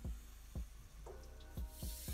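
Felt-tip marker working on paper: a few short, soft strokes and taps, at the start, about half a second in and twice near the end. Faint background music with held notes lies under it.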